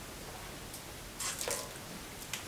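A wine taster spitting a mouthful of wine: a few short, wet, hissing spurts just past the middle.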